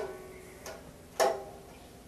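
Small harp plucked in single notes, one right at the start and another a little over a second in, each ringing briefly and fading.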